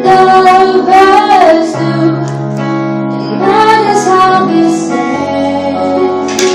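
A teenage girl singing a slow, sustained melody live into a microphone, her voice gliding between held notes, over steady accompanying chords that change every couple of seconds.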